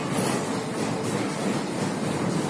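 Steady rumbling background noise of a busy gym, with no distinct clank or impact from the weights.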